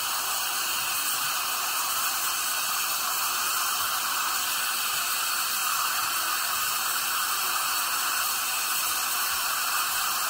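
Dental high-volume suction and a dental drill (handpiece) running together as a steady hiss while the last of a tooth cavity is cleared out.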